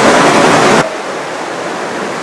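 Rushing river water at rapids or a waterfall, a loud, steady rush that drops suddenly to a quieter rush a little under a second in.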